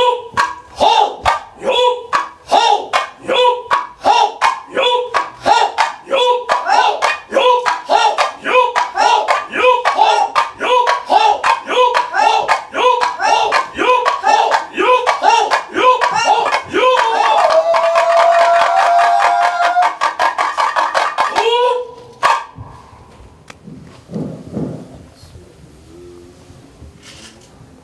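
Sogo, small Korean hand drums, struck in unison by several players. It is a steady beat of about one and a half strikes a second that quickens into a fast roll, then stops abruptly about 22 seconds in.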